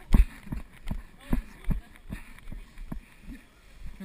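Running footsteps on a muddy dirt trail, heard close to a body-worn camera: heavy thuds about two to three times a second, the loudest one at the very start.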